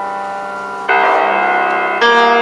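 Grand piano playing slow jazz chords alone: a held chord rings out, then a new, louder chord is struck about a second in and left to ring.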